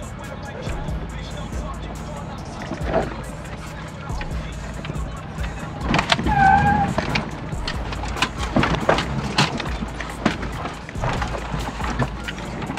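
Toyota Land Cruiser 80 Series crawling in low range over a rocky dirt trail, heard from inside the cabin: a steady low engine drone with scattered knocks and rattles as the truck rides over the rocks.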